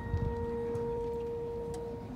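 A high school marching band's front ensemble holding one steady, pure tone, the last sustained note of its show, slowly fading over a low outdoor rumble.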